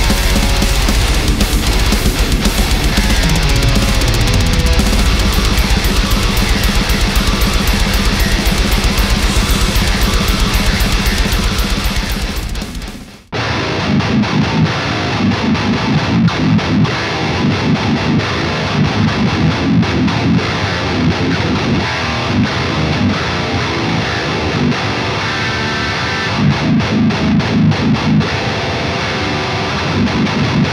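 A heavy metal song built on a distorted baritone electric guitar tuned to drop G runs for the first part and ends with a sharp drop in level about 13 seconds in. Then the same guitar, a Jazzmaster-style body on a 27.75-inch baritone-scale aluminum neck with a single Seymour Duncan slug pickup, plays alone through a high-gain amp in heavy, rhythmic chugging riffs.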